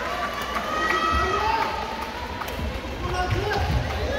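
Badminton rally: several sharp racket strikes on the shuttlecock, and shoes squeaking on the court floor in drawn-out pitched squeals, over voices and chatter in a large sports hall.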